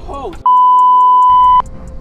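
A censor bleep: one loud, steady, pure beep tone about a second long, covering a swear word. It follows a brief spoken exclamation.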